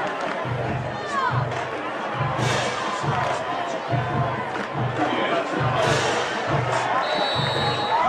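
Football stadium crowd noise with a drum keeping a steady low beat, about three beats every two seconds, and a short, high whistle blast near the end.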